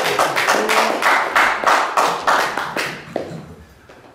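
Hands clapping in a steady rhythm, about four claps a second, with faint voices underneath. The clapping stops about three seconds in.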